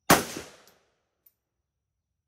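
A single shot from a Hungarian AK-63DS, an AK-pattern rifle in 7.62×39 mm, fired from the bench, with a short echo dying away within about half a second.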